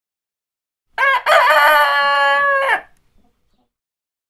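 A rooster crowing once, about two seconds long: a short opening note, then a long held call that drops in pitch at the end.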